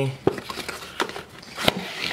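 A small cardboard retail box being opened by hand: the lid flap rubbing and several light clicks and taps of cardboard, the sharpest about one and a half seconds in.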